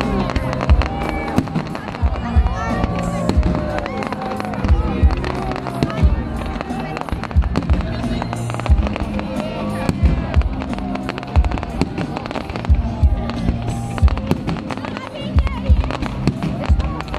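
A fireworks display going off: many sharp bangs in quick, uneven succession. Voices and music can be heard underneath.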